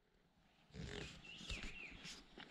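Faint grunting from yaks nearby, with a few soft knocks and a high whistle gliding downward near the end.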